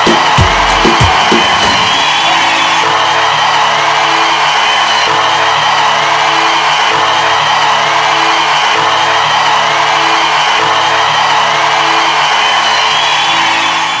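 Music with a beat that stops about a second in, giving way to long held chords under a steady, loud wash of audience cheering and applause.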